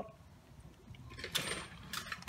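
Faint, sharp metallic clicks and rattles starting about a second in, growing a little busier toward the end.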